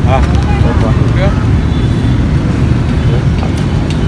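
Steady low rumble of street traffic with motorbikes running and passing, and people talking in the background.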